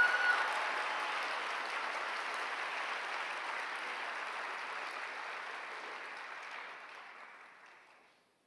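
Large auditorium audience applauding, strongest at first and then slowly fading away until it dies out near the end. One held high call from someone in the crowd sounds over the clapping at the very start.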